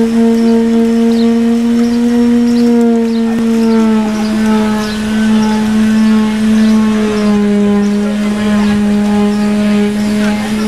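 A continuous low droning tone that holds one pitch, stepping slightly lower about four seconds in and again later on, with faint short chirps repeating above it.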